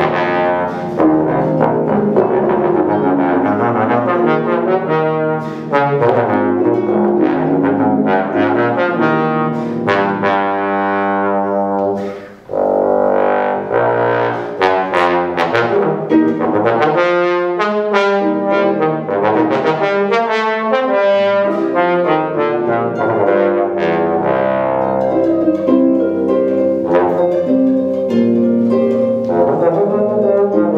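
Bass trombone and concert pedal harp playing a duet: the trombone carries a sustained melodic line, moving from note to note, over the harp's plucked accompaniment. There is a brief break about twelve seconds in.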